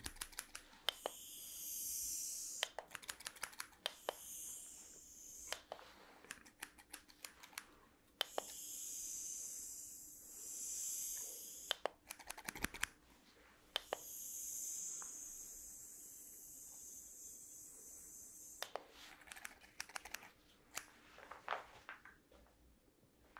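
Hair-cutting scissors snipping in quick runs of clicks close to the microphone, alternating with the steady hiss of a small handheld mist sprayer held in separate spells of two to three seconds.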